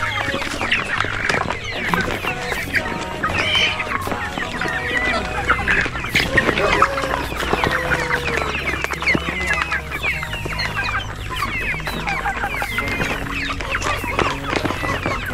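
A large flock of young chickens clucking and cheeping all at once, a dense chatter of many short, overlapping calls.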